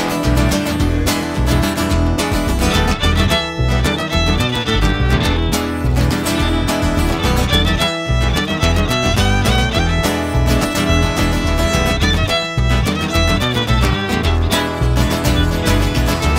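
Instrumental break of a country song: fiddle playing the lead over strummed acoustic guitar, with a steady beat underneath.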